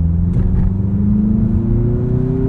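Turbocharged 2.5-litre inline-four of a Mazda CX-50 pulling under acceleration, its engine note rising slowly and steadily in pitch over a low road rumble, heard from inside the cabin.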